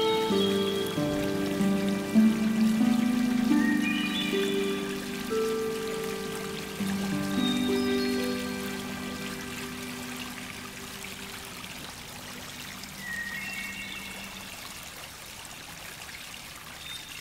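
Gentle background music of slow, held chords fading out, over water trickling steadily in a small garden pond; by near the end only the trickle remains.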